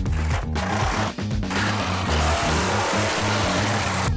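Background music with a steady, repeating bass beat; about halfway through a dense hiss swells up over it and cuts off sharply at the end, like a build-up in the music.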